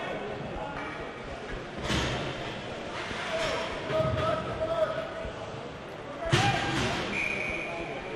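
Ice rink ambience during a stoppage in hockey play: voices echo in the arena, with two sharp knocks about two seconds in and again past six seconds, the kind made by sticks or the puck hitting the boards or ice.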